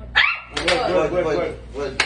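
A sudden short high-pitched cry, followed by about a second of loud, excited vocalising and another short cry near the end.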